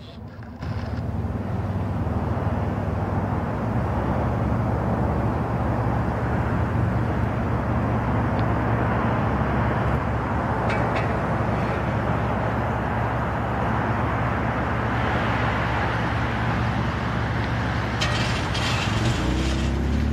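Steady rumble of vehicle traffic with a constant low drone, running without a break, with a few faint clicks near the end.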